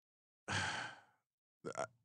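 A man's breathy sigh into a close microphone about half a second in, fading out within half a second, followed near the end by a brief voiced sound as he starts to speak.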